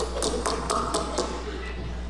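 A quick run of light clicks or taps, about eight in the first second or so, over a steady low hum.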